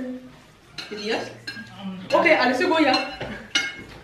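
Knives and forks clinking and scraping on dinner plates, with short sharp clinks. About two seconds in, a brief voice-like sound lasting under a second is louder than the cutlery.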